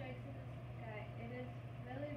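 A faint voice speaking over a steady low hum.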